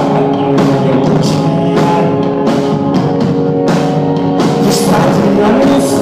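Rock band playing live: loud, sustained guitar chords over a steady drum-kit beat with cymbal hits about twice a second.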